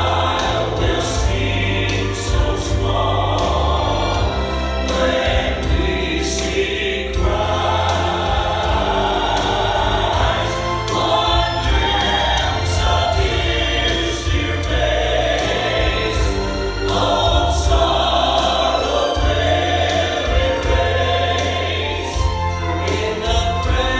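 Gospel music: two women and a man singing together into microphones over an accompaniment with a strong, steady bass.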